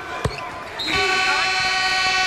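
A single ball thump about a quarter second in, then a basketball arena's horn sounding one long steady blast from about a second in, signalling a stoppage in play.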